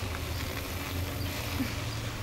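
A low, steady hum with a faint background haze and a few faint scattered ticks.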